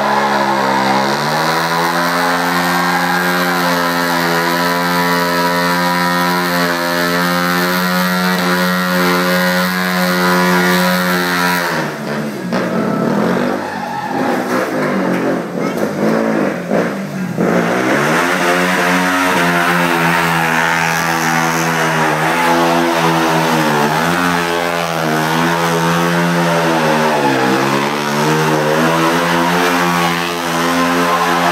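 KTM Duke single-cylinder motorcycle engine held at high revs during a burnout, its tone steady for about twelve seconds. It then gives way to several seconds of rough noise without a clear engine note. After that the engine comes back and runs high again, dipping and climbing in revs every second or two.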